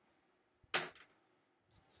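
Short sharp handling noise of a sheet of paper about three-quarters of a second in, with a fainter one near the end.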